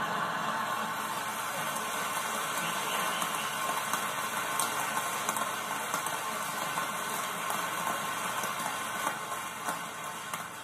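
Large hall audience applauding and laughing: a steady wash of many hands clapping that fades away near the end.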